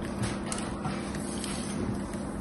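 Small knife shaving thin slices off a piece of soap, a few short crisp scraping strokes over a steady low hum.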